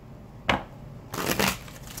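A deck of tarot cards being shuffled by hand: a sharp snap about half a second in, then a longer rustle of cards.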